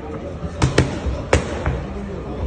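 Gloved punches smacking into focus mitts during pad work: a quick pair of sharp smacks a little past half a second in, then a third a moment later.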